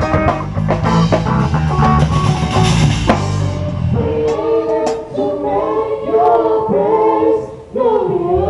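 A live rock band (drum kit, electric bass, guitar and keyboard) plays loudly, building on a swelling cymbal wash that cuts off suddenly about three seconds in. Voices then sing held notes over a lighter accompaniment.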